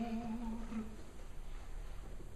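A soft, held low note from a live operatic baritone-and-orchestra performance fades out in the first second, leaving a hushed pause in the music with only faint concert-hall background.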